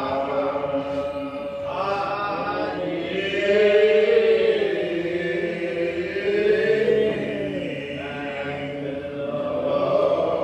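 Church congregation singing a slow hymn a cappella in long, drawn-out notes that glide slowly up and down.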